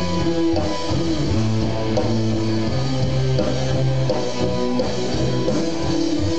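Live rock band playing an instrumental passage: electric guitar notes held over a steady bass guitar line, loud and unbroken.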